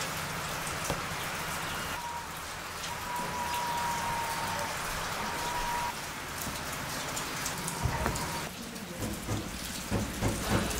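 Steady rain falling, an even hiss of drops with no break.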